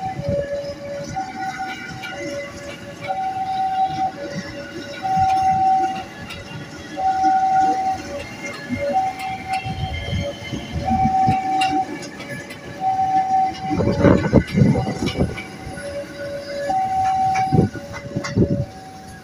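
Level crossing alarm sounding a steady two-tone signal, a high note and a low note alternating about a second each, warning that a train is on the crossing. Under it, a KRL commuter electric train rumbles and clicks past, with heavier wheel clatter around fourteen seconds in and again near the end.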